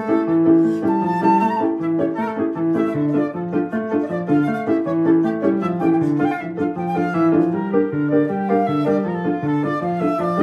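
Flute and Yamaha Clavinova digital piano playing a choro, a flute melody of many short notes over a steady, rhythmic piano bass-and-chord accompaniment.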